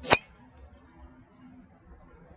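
A CorteX 9-degree driver striking a golf ball off a tee on a full swing: one sharp, loud crack just after the start.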